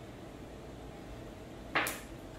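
One sharp glass click near the end: a shot marble striking a target marble and knocking it out of its row.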